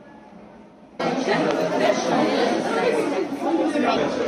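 Faint street background, then, after an abrupt cut about a second in, loud chatter of many people talking at once, with no words standing out.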